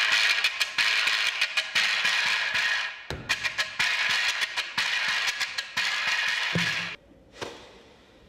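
Quijada, a donkey-jawbone percussion instrument, played with a wooden stick, its loose teeth rattling in quick strokes. The playing breaks off briefly about three seconds in and stops about seven seconds in.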